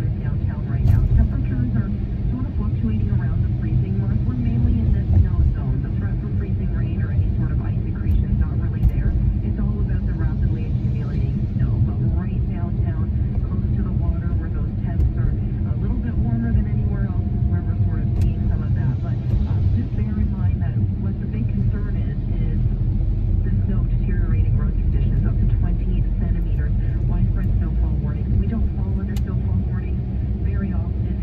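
Steady low rumble of a car's engine and tyres on a wet road, heard from inside the cabin, with talk going on quietly underneath.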